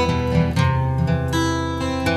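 Background music: an acoustic guitar strumming chords, a fresh strum roughly every half second.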